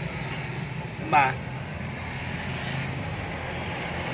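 A steady low machine hum runs throughout, broken by one short spoken word about a second in.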